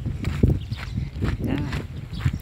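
Irregular low thumps and rumble from footsteps and a handheld phone being jostled while walking, with a brief bit of voice about a second and a half in.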